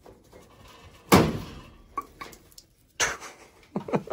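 Two sudden knocks, the louder about a second in and another at about three seconds, with a few faint clicks between, from handling metal parts and fittings at a steam boiler's controls.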